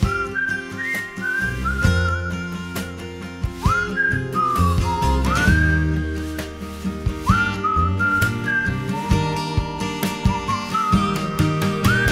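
Whistled melody in an instrumental break of a pop song, sliding up into several of its notes, over a band backing of bass, guitar and drums.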